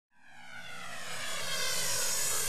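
A rushing whoosh that swells up from silence over about two seconds, like an intro transition sound effect.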